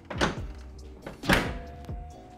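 Hood of a 2005 Toyota 4Runner being pushed shut: two thunks about a second apart, the second louder, over background music with a beat.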